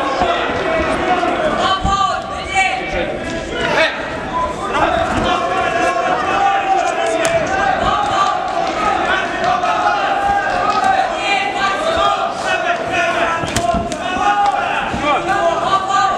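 Several voices shouting from ringside and the stands throughout a full-contact kickboxing exchange, with short sharp thuds of gloved punches and kicks landing scattered through it.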